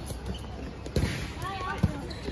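A dodgeball bouncing on the hard court: two thuds, about a second in and near the end, with players' voices calling between them.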